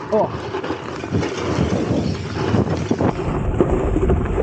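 Jump bike rolling fast down a dry dirt trail: steady tyre noise on the dirt with frequent small knocks and rattles over the bumps, and wind on the microphone. A short "oh" from the rider at the start.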